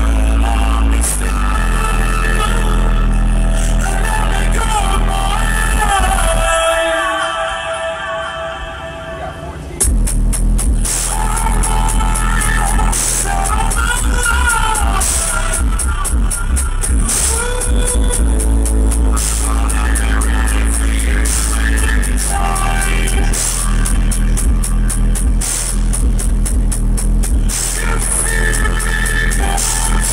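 A song with vocals played loud through a car audio system's ten-inch subwoofers, heard inside the truck cab, with heavy deep bass. About seven seconds in the bass drops away, leaving the melody, and it returns suddenly about ten seconds in.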